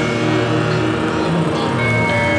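Heavy metal band playing live: a slow passage of held, distorted guitar chords with no clear drum beat.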